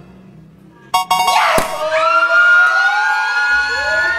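A couple of sharp pops about a second in, then several people screaming with excitement together, a long high held scream lasting to the end.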